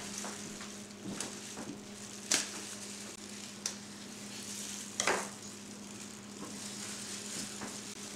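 Four sharp snips, a second or so apart, as scissors cut through the butcher's netting on a smoked boneless leg of lamb, over a steady low hum and hiss.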